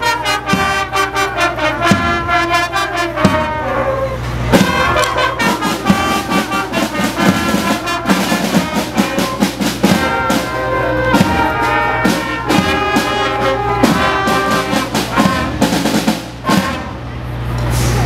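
Youth band playing a tune outdoors, brass and flutes over a steady drum beat.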